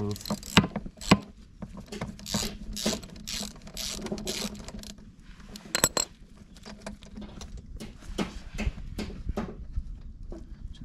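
Spark plug socket and wrench turning a spark plug out of a Honda EU20i generator's cylinder head: a string of irregular metallic clicks and short rattles, with a few sharper clicks.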